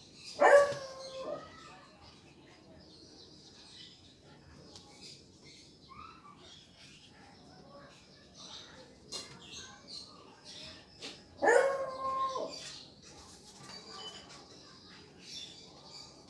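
A dog barking twice, once just after the start and again about eleven seconds later, each bark falling in pitch and then holding. Between the barks, faint scratching of a felt-tip marker writing on paper.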